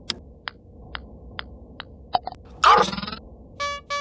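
Cartoon golf sound effects: a putter taps a golf ball, then light ticks about every half second as the ball rolls, and a couple of clicks as it drops into the cup. A loud short burst with a voice-like pitch follows, and a brief steady electronic tone sounds near the end.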